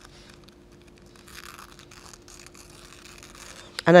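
Thin natural tissue paper being torn by hand: soft rips and crackles, the longest about a second and a half in, tearing away the hard edges of the sheet.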